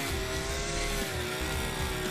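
Huter GGT petrol string trimmer's two-stroke engine running at high speed as the line head cuts through thick grass, a steady drone whose pitch wavers slightly.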